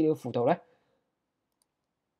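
A man's voice speaking for about half a second, then silence.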